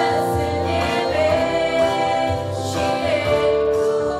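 A choir singing a Christian hymn, holding long notes that move from chord to chord.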